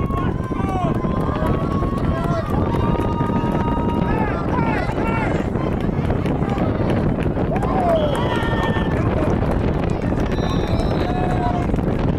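Spectators at a youth football game shouting and cheering as a play runs, with long drawn-out yells among the calls. A steady rumble of wind on the microphone runs underneath.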